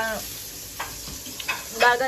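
Food frying in a pan: a steady sizzle, with a few light clicks about a second in.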